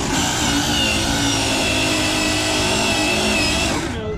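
Brushless electric motor of a Losi 22S 1968 Ford F100 1/10-scale RC drag truck whining at high revs under full throttle, the rear tyres spinning on asphalt in a burnout. The high whine wavers slightly and cuts off just before the end.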